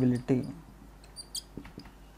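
A man's voice briefly at the start, then a marker on a whiteboard making a few short, high squeaks and light ticks as it writes, around the middle.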